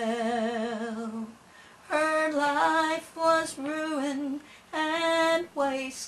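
A woman singing a gospel song solo and unaccompanied. She holds a note with vibrato for about a second, then sings several short phrases with brief pauses between them.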